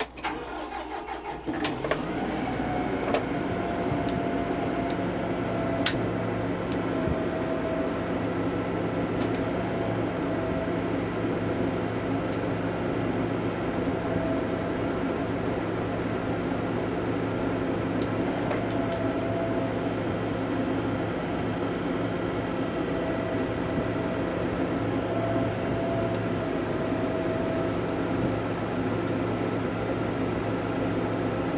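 Kubota M100GX tractor's diesel engine running steadily while the Terrain King KB2200 boom's hydraulics lift and fold the 60-inch rotary cutting head up for narrow transport. The sound builds over the first couple of seconds, then holds steady with a wavering whine over the engine and a few sharp clicks early on.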